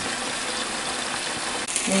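Thin chicken breast steaks frying in oil in a frying pan: a steady sizzling hiss that turns brighter near the end.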